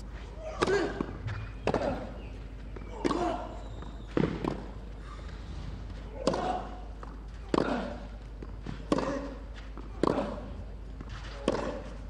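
Tennis rally on a clay court: a ball struck back and forth by racket, one sharp strike about every 1.2 seconds, nine or so in all. Short vocal grunts from the players follow some of the strikes.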